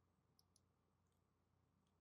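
Near silence.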